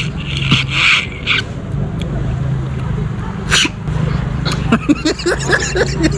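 A person sucking and slurping the meat out of a cooked sea-snail shell whose tip has been cut off: a hissing suck lasting about a second, starting about half a second in, and a shorter sharp one about halfway through.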